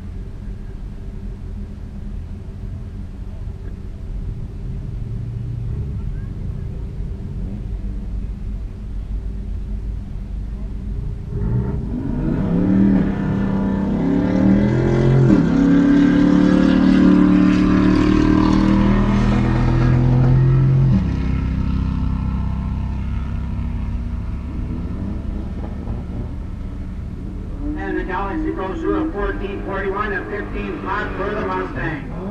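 A pair of drag-racing street cars, a Ford Galaxie 500 and a Mustang, idle at the line, then launch about twelve seconds in. The engines rise in pitch and step through several gear changes, loud for about nine seconds. The loud part ends abruptly and a lower engine drone carries on.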